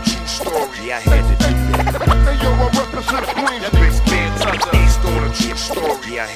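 Hip hop beat with heavy bass notes and drums in a loop that repeats about every three seconds, with vocal snippets and scratch-like glides over it.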